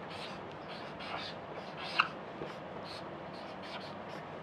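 Marker pen writing on a whiteboard: a run of short, scratchy strokes, with one louder squeak of the tip about halfway through.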